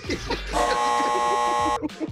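Game-show buzzer sound effect marking a wrong answer: one steady buzz of just over a second, starting about half a second in and cutting off sharply.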